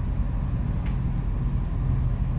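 Steady low hum of running machinery, even in level throughout.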